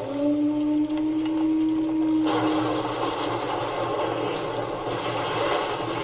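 Documentary soundtrack played through a television speaker: a held low tone for about three seconds, joined a little over two seconds in by a steady rushing noise that carries on to the end.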